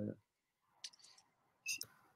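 A voiced sound trails off at the start, then two faint short clicks about a second apart, with a few softer ticks after the first.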